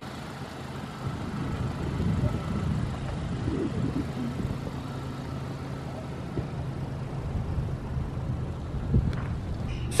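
Compact SUV driving slowly past across a parking lot: a low, steady engine and tyre sound that grows a little louder about two seconds in.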